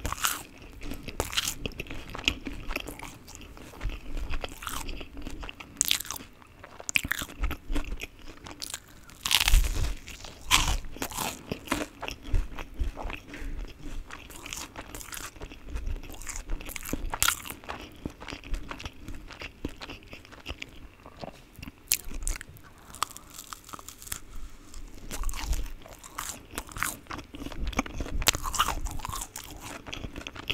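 Close-miked chewing and biting of chewy spicy Korean rice cakes (tteokbokki): irregular wet mouth clicks and bites throughout, loudest about a third of the way in.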